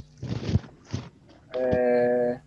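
A voice held on one steady note for just under a second near the end, after a few faint short sounds.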